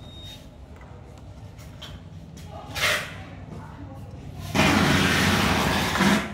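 Close handling of amplifier cables and connectors: a low steady hum with a single knock a little before halfway, then loud rustling and scraping for about a second and a half near the end.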